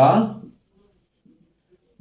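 A man's spoken word trailing off about half a second in, then the faint strokes of a marker writing on a whiteboard.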